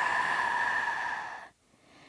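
A woman's long, deliberate deep exhale, breathy and audible, fading out about a second and a half in.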